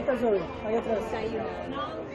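High-pitched voices chattering and calling out, several talking at once.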